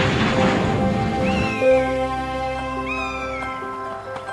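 A gull calls twice, each a high, downward-sliding cry, over background music. A rushing noise fills the first second and a half.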